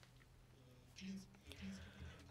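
Near silence: room tone with a steady faint low hum, broken by two brief, faint vocal murmurs through the microphone, about a second in and again shortly after.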